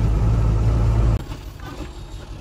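Loud, steady low rumble of a truck's engine and running gear heard from inside the cab while driving over a rough dirt road, cut off abruptly about a second in and replaced by a quieter, even drone.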